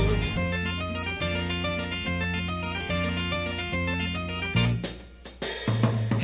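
Background music from an instrumental passage of a song: a quick run of short, evenly repeated keyboard-like notes over held bass notes that change about once a second. It drops out briefly near the end, with a few clicks, before a louder, fuller section comes in.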